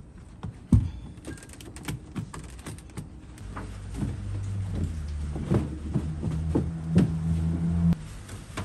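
Carpet pieces being handled and fitted into a car's floor: rustling, scattered knocks and a sharp thump about a second in. From about halfway a low steady hum runs under the knocks and cuts off suddenly at the end.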